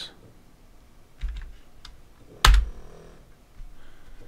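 Computer keyboard typing: a few scattered key presses, with one much louder keystroke about two and a half seconds in.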